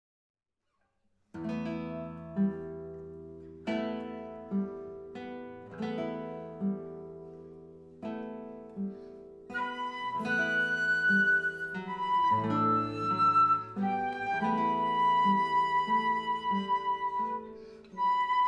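Live duet for acoustic guitar and flute. The guitar starts alone about a second in, with slow picked notes and chords that ring and fade. About halfway through, the flute comes in with long, held melody notes over the guitar.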